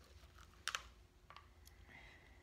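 Quiet room tone broken by a few light clicks: a sharp double click about two-thirds of a second in, the loudest, and smaller ticks a little later.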